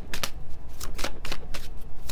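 A tarot deck being shuffled by hand, overhand from one hand to the other: a quick, uneven run of crisp card slaps, several a second.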